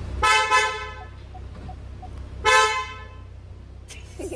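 Vehicle horn honking twice, about two seconds apart, over a steady low rumble of traffic.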